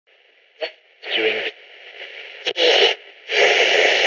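Portable radio being tuned across the dial: bursts of static hiss between stations, broken by two sharp clicks, the longest burst coming near the end.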